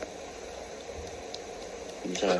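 Steady low hiss of background room noise, with no voices.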